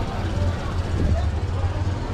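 Street background noise: a steady low rumble with faint voices.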